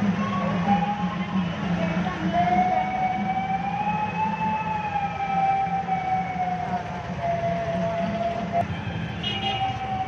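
A South Indian double-reed pipe plays a few short notes, then holds one long, slowly wavering note for about six seconds, over a steady low drone.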